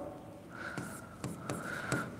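Pen writing on the glass of an interactive display panel: quiet scratching and a few light taps as a line of working is written.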